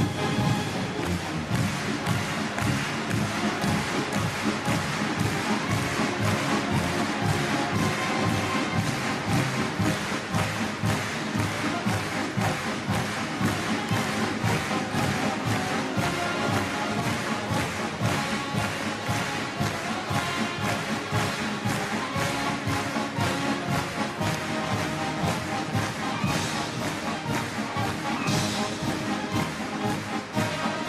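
Massed military wind bands playing march music: clarinets, trombones, saxophones and other brass over a steady drum beat.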